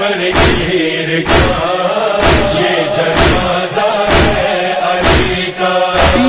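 A voice chanting a melody over a steady beat, about one beat a second.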